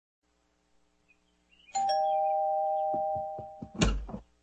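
Two-note doorbell chime, ding-dong: a high note then a lower one, ringing on together and slowly fading. Near the end a few soft taps, then a louder clatter as the front door is opened.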